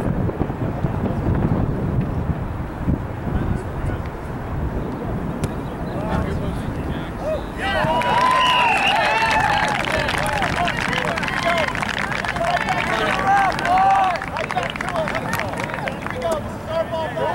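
Low wind rumble on the microphone, then from about halfway in, many shouted calls from players and spectators across a rugby field, overlapping to the end.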